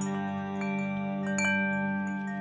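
Chimes ringing at scattered pitches, struck every fraction of a second with the loudest strike about halfway through, over a steady low drone: a meditative intro soundscape.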